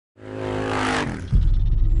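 Motor-vehicle engine sound effect: an engine tone for the first second, then a louder, rapid low pulsing engine rumble from about a second and a half in.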